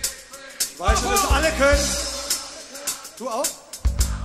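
Live rock band at an open-air concert: kick drum beats with bass, and a voice calling out over the music about a second in, with a short rising cry near the end.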